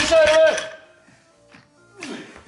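A man's voice over background music for about half a second, then a quiet stretch.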